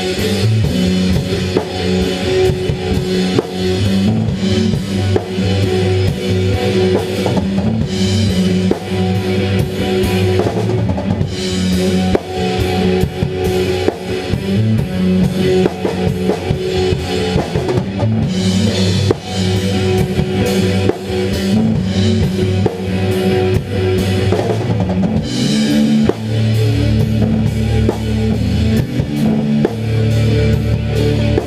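Three-piece indie/space-rock band playing an instrumental passage live: electric guitar, bass guitar and a full drum kit with steady kick drum and cymbals. The low end grows heavier a few seconds before the end.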